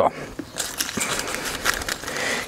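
Baking paper crinkling and rustling as it is handled under a sheet of puff pastry, with a few light clicks.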